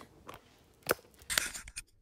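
Handling noise from a phone camera being picked up or adjusted: rustling with a few small clicks and two sharp knocks about a second and a second and a half in.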